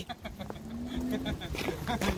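A bee buzzing close to the microphone: a thin, steady hum that rises slightly in pitch and stops about a second and a half in, with faint voices under it.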